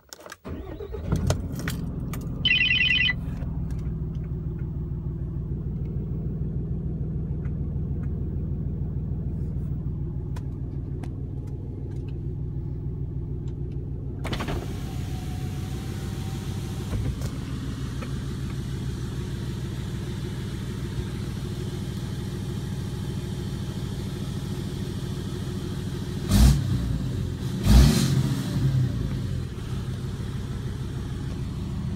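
A 2016 Ram 2500's 6.7 L Cummins inline-six turbodiesel, straight-piped with a 4-inch turbo-back exhaust and its DPF and EGR deleted, starts and settles into a steady, loud idle. A short dashboard chime sounds a couple of seconds after it catches. About halfway through the sound turns brighter, and near the end the throttle is blipped twice.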